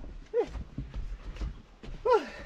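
A person's brief falling "ooh"-like vocal sound about half a second in, with a second one just at the end, over faint knocks of a bicycle moving on wooden boardwalk planks.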